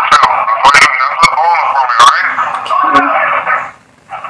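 Voices over a jail telephone line, thin and band-limited and not made out as words, with several sharp clicks on the line.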